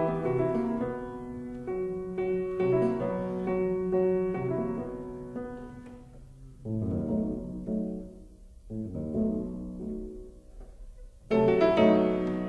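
Solo piano playing a fast Classical-era sonata movement in F sharp minor: running figures that soften and thin out in the middle, with a short lull, then a loud chord entry near the end.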